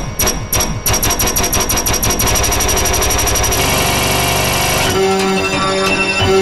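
Black MIDI played on a sampled MIDI piano: massive note clusters strike faster and faster until they blur into a continuous dense roar, then about five seconds in it settles into loud held chords.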